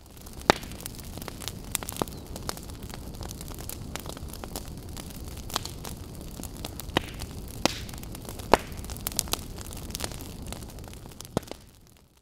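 Crackling fire: a steady low rumble of flames with scattered sharp crackles and pops, fading in at the start and out near the end.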